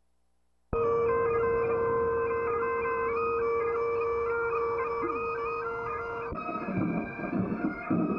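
Bagpipes start suddenly just under a second in, a steady drone under the chanter's melody. About six seconds in the drone cuts off and the piping turns rougher and busier.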